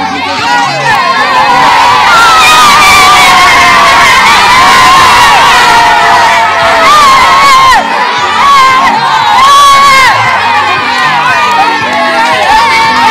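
A crowd of children shouting and cheering together, loud and nearly unbroken, with a brief dip about eight seconds in.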